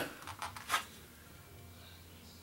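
Two brief, quiet rustles of handling as a Glock 42 pistol is drawn out, then faint room tone.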